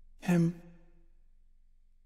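A single short voiced sigh, a loud breath about a quarter-second in that trails off within a second, over a faint low hum that slowly fades.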